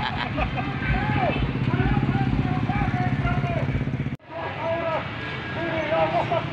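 A motorcycle engine running steadily close by, with voices over it. The sound cuts off abruptly about four seconds in, then voices and street noise carry on.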